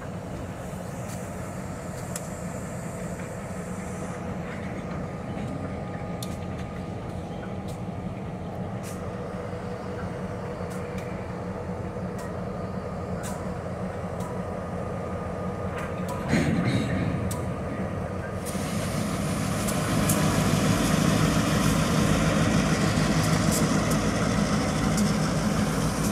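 Diesel switching locomotives running with a steady low engine drone as they move a cut of freight cars. About two-thirds of the way through there is a sudden loud burst of noise. After that the locomotive sound grows louder and fuller as the engines come up to the crossing.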